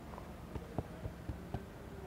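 About four soft knocks or clicks at uneven intervals over a steady low room hum.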